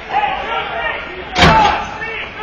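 A single sharp, loud bang of an impact in ball hockey play, about one and a half seconds in, with a short echo after it. Players' voices are heard throughout.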